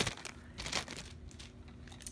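Plastic bag crinkling as an item is pulled out of it. The crinkle is loudest at the start and fades within the first second to a few faint rustles.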